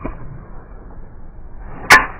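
A 5-wood swung down through the ball: a brief swish, then a single sharp crack of the club face striking the golf ball near the end.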